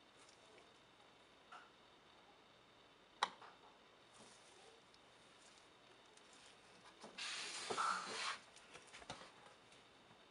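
Quiet handling sounds of a plastic pitcher and soap mold while soap batter is poured: a sharp click a little over three seconds in, then a rustle lasting about a second near the end, followed by a few small ticks.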